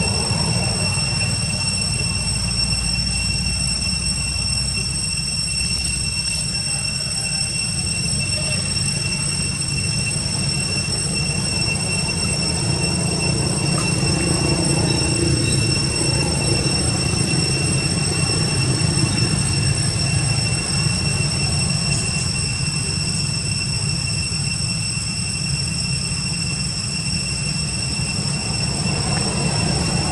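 Cicadas droning in one steady high-pitched tone, with a low rumble beneath.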